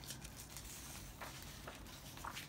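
Faint paper rustle with a few light ticks as a picture-book page is turned by hand.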